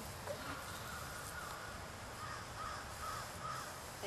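A bird calling: a run of about seven short, evenly spaced calls at one steady pitch, over a steady low background noise.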